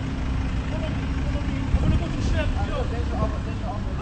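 A car engine idling: a steady low rumble with a faint held hum that fades about halfway through.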